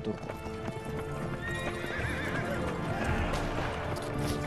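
Horse hooves clip-clopping, with a horse whinnying in a wavering call about halfway through, over a sustained music drone.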